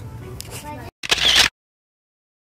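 Shop background with faint voices, broken about a second in by a short loud hissing burst of noise. The sound then cuts to dead silence.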